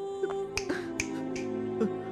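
Film background score of sustained low tones, punctuated by several sharp, snap-like clicks at irregular spacing.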